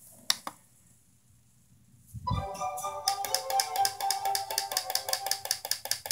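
A couple of short clicks, then after about two seconds of silence children's DVD music starts from the television: a bright tune of quick repeated notes.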